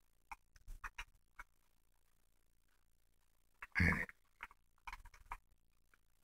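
Faint crisp crackles and clicks of a folded dollar bill being pressed and tucked shut as an origami box lid, in two scattered runs. A short, louder mouth noise about four seconds in is the loudest sound.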